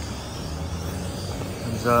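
Electric inflator blower running steadily with a low hum, keeping an inflatable water slide inflated.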